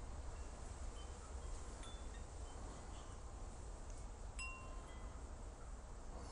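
Faint chimes ringing a few sparse, scattered notes, one of them a fuller strike about four and a half seconds in, over a low steady rumble.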